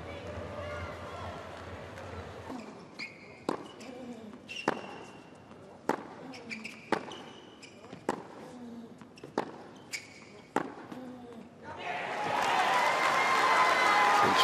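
Tennis rally on a hard court: racket strings hit the ball about seven times, roughly once every 1.2 seconds, with short high squeaks between shots. The point ends and the crowd applauds, loudly, near the end.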